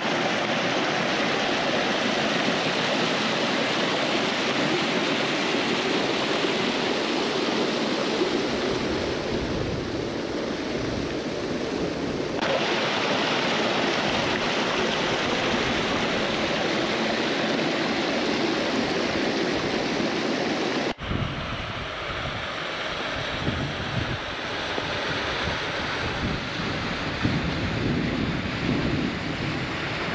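Steady rushing of creek water tumbling over boulders in a small cascade and waterfall into a rock pool. The sound shifts abruptly twice, about 12 and 21 seconds in, and is a little quieter after the second change.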